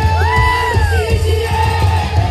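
Live qawwali music played loud through a PA, with a singer and keyboard over heavy bass and drums, and the crowd cheering. In the first second a long vocal note rises, holds and falls.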